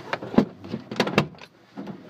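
Aircraft cockpit canopy being pulled shut and latched: three sharp knocks and clicks within about a second, the first the loudest.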